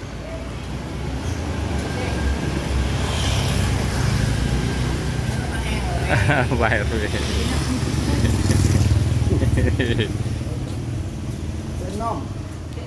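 Motorcycles riding past close by, their engine noise building up, loudest in the middle and later part, then easing off near the end.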